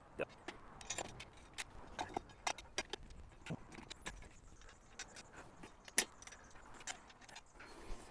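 Light, irregular metallic clicks and clinks of steel bolts, flange nuts and a 10 mm combination wrench as the bolts are fitted and tightened through a steel flange plate. The sharpest click comes about six seconds in.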